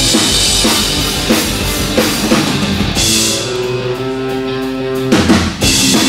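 Heavy rock band playing live on loud drum kit and guitars, the cymbals and drums pounding for the first three seconds. About three seconds in the drums drop out and held guitar and bass notes ring on alone, until the whole band crashes back in about five seconds in.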